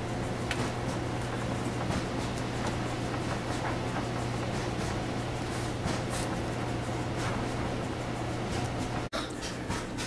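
Steady indoor room tone with a constant low hum, like a household appliance or air handler running, and a few faint clicks. The sound breaks off briefly about nine seconds in.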